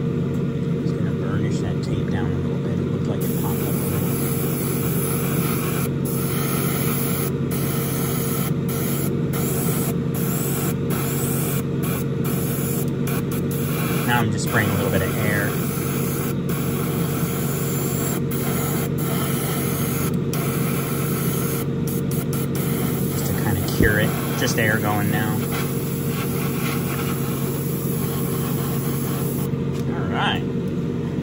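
An airbrush spraying silver trim paint: a high hiss that starts a few seconds in and stops just before the end, broken by many short pauses between passes. Under it runs the steady hum of the spray booth.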